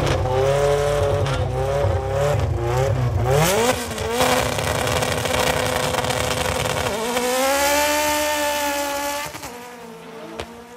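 Two drag cars, a Honda Civic and a Porsche, at the start line: engines revving up and down, then held at a steady high rev. About seven seconds in they launch, the engine note climbing for about two seconds, then falling away as the cars pull off down the strip.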